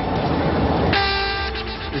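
Ceremonial cavalry trumpet sounding a call over a steady outdoor rush of noise: a long, steady held note comes in about a second in and fades near the end.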